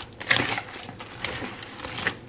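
A utensil stirring and tossing wet shredded cabbage and grated beet in a glass bowl: irregular rustling and scraping with a few short clicks, loudest about a third of a second in.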